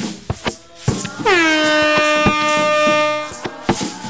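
Mento band music with sharp percussion hits; a little over a second in, a loud held note slides down and then holds steady for about two seconds before stopping.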